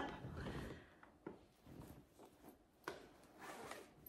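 Faint rustling and handling of fabric and a project bag as a cross-stitch piece is taken out, with a couple of soft knocks, one about a second in and another near three seconds.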